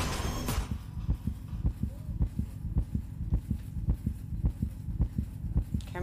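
Suspense music cuts off about half a second in, leaving a low heartbeat sound effect thumping steadily in quick lub-dub pairs as a tension cue.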